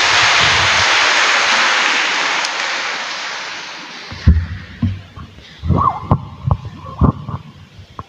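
Audience applauding, swelling and then fading out over the first four seconds. Then several dull thumps and knocks as the microphone on the lectern is handled.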